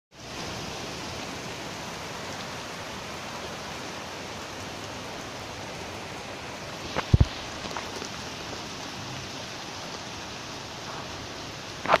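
A steady rushing hiss, like rain or running water. Two sharp thumps come about seven seconds in and another just before the end.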